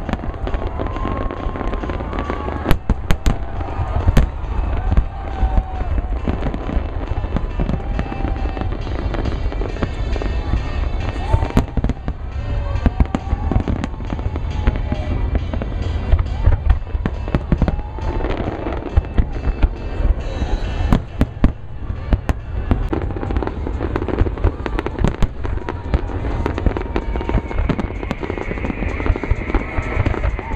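Aerial fireworks display: a rapid, irregular run of sharp bangs and deeper booms from shells bursting, over a continuous low rumble.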